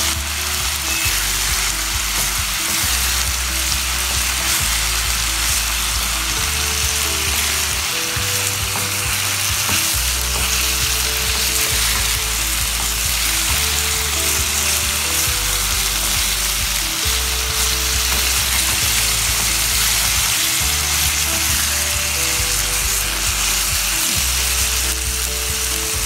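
Chicken and vegetables sizzling steadily in a nonstick frying pan as they are stirred with a wooden spatula. Background music with a slow, stepping bass line plays underneath.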